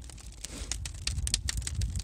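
Pine logs and pallet wood burning in an open firebox, crackling and popping with many sharp irregular snaps over a low rumble.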